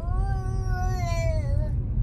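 A baby's long high-pitched vocal squeal: one drawn-out note that wavers slightly and dies away near the end, over the low rumble of the car cabin.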